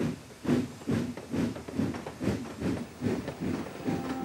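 Steam locomotive chuffing as it pulls a passenger train out of a station, an even rhythm of about two puffs a second.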